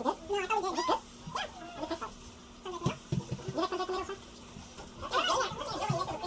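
Indistinct background voices, high and wavering in pitch, coming in short scattered phrases over a faint steady hum.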